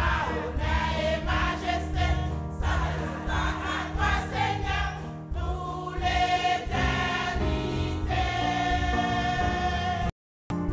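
Women's church choir singing a hymn in parts, ending on a long held note near the end.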